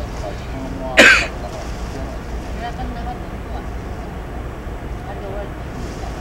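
Faint voices of people talking over a steady low rumble. About a second in, a person close by gives one short, loud throat-clearing cough.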